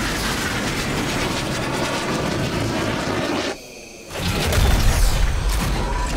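Robot suit sound effects: rocket thrusters rushing and mechanical whirring as it descends, a brief lull, then a heavy low boom and rumble from about four seconds in as it lands.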